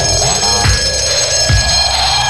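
Live electronic dance music played from a synthesizer rig: a heavy kick drum a little faster than once a second, under steady high ringing synth tones and a sweep that rises between the beats.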